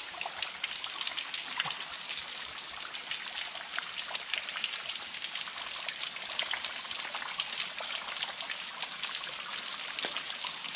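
Water dripping and trickling steadily, a dense patter of many small drops splashing onto stone and wet ground.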